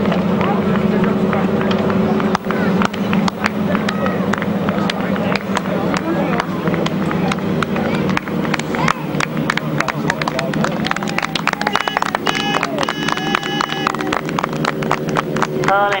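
Grasstrack racing sidecar outfits' engines running at low revs as they ride past, with a steady low hum that fades during the second half and uneven popping that grows denser in the second half, under an unclear voice.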